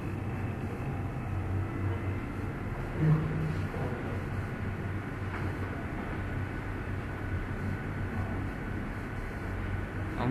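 Steady low hum with a background hiss, with one short spoken word about three seconds in.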